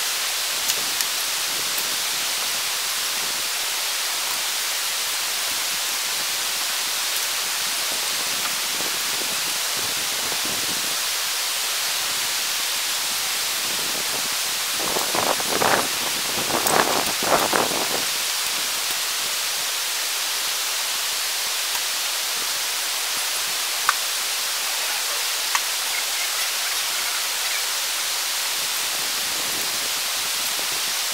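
Gas camp stove burner hissing steadily under a pot of water being brought to the boil. About halfway through, a brief, louder patch of fuller sound rises over the hiss.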